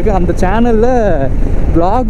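A man talking while riding a motorcycle, his voice over steady wind rush on the microphone and the engine running underneath, with a short pause about two-thirds of the way in.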